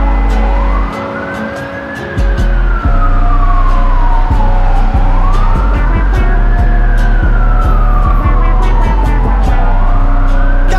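Emergency vehicle siren wailing, rising and falling slowly about every four and a half seconds, over music with a deep bass. The bass drops out briefly about a second in.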